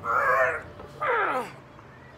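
A man's two loud, strained yells of effort, each about half a second long, the second falling in pitch, as he heaves a heavy tire-loaded axle bar from the ground to his shoulders.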